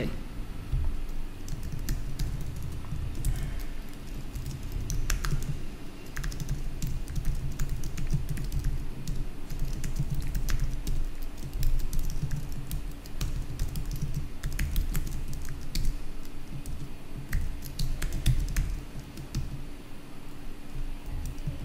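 Typing on a computer keyboard: irregular runs of key clicks with dull knocks from the keystrokes, over a faint steady hum.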